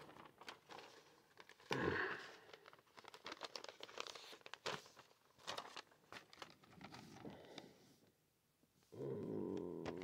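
Paper receipt rustling and crinkling in faint, intermittent crackles as it is handled and folded.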